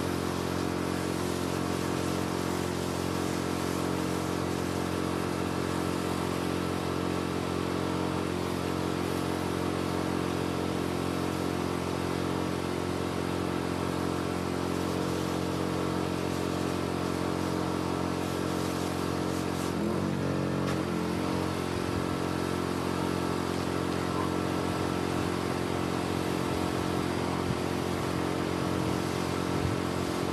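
Pressure washer's engine running steadily under the hiss of water spraying from the wand. The engine note wavers briefly about twenty seconds in.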